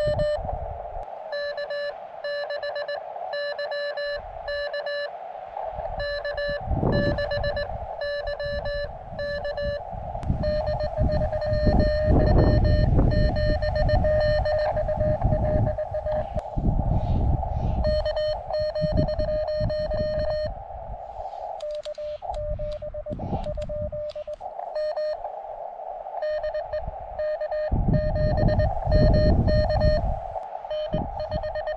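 Morse code (CW) from a portable HF ham transceiver on the 20-metre band: a single pitched tone keyed on and off in dots and dashes as contacts are exchanged. Gusts of wind rumble on the microphone from time to time, strongest in the middle and near the end.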